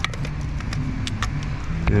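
A sharp click, then a scatter of light, irregular clicks and taps of a hand ratchet and metal tools being worked in a tight engine bay, over a steady low hum.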